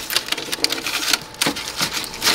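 Clear plastic sheeting crinkling and crackling in quick, irregular clicks as a hand works inside a taped-over van door cavity.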